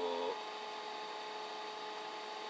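A man's drawn-out hesitation sound ends just after the start, then a steady electrical hum with faint thin whining tones: room tone.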